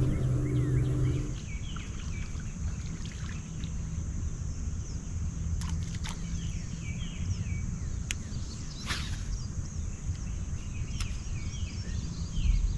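Outdoor ambience of small birds chirping repeatedly over a steady high-pitched drone, with a low rumble like wind on the microphone and a few sharp clicks. A low steady hum stops abruptly about a second in.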